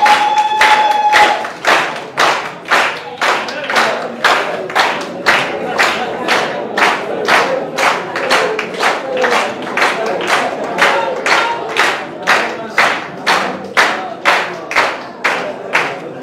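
Audience clapping in unison in a steady rhythm, about two claps a second. A brief high held tone sounds over the first second.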